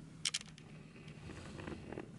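Faint handling noise: a quick run of three or four small clicks about a quarter second in, then soft rustling and one more small click near the end.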